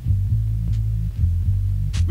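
Electronic dance music stripped down to a deep, throbbing bass line, with the drums and higher parts dropped out in a breakdown of a techno DJ mix. The full track comes back in right at the end.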